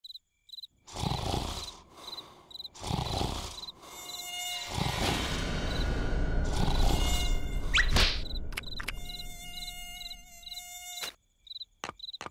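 Animated night ambience with short, high cricket chirps repeating a few times a second, broken by louder swelling whooshes and buzzes. About nine seconds in, a mosquito's steady buzzing whine comes in and cuts off suddenly near eleven seconds.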